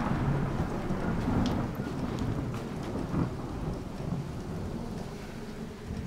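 A roll of thunder dying away slowly over steady rain.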